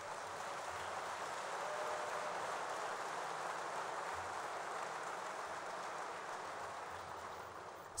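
Audience applauding in a large hall, a steady even clapping that tapers off near the end.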